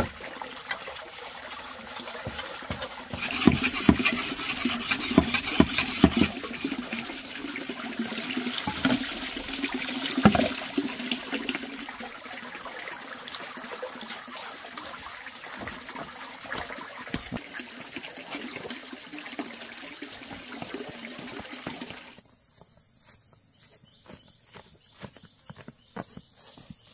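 Water pouring steadily from a bamboo pipe into a plastic basin, with a run of sharp scraping strokes in the first half as a metal blade is sharpened on a wet stone. Near the end the water stops and insects chirp steadily.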